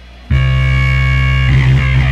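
Amplifier hum, then about a third of a second in the band cuts in abruptly with a loud, held distorted electric guitar chord. From about a second and a half in the sound gets busier as the rest of the rock band plays along.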